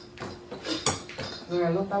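A few light, sharp clicks and clinks of small hard plastic toys being handled and knocked together, spread over the first second and a half, followed by a voice near the end.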